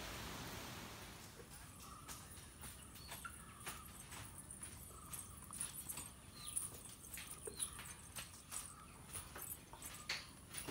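Faint, irregular light clicks and jingling of a child's metal anklets as she walks barefoot, with a few short high chirps in between.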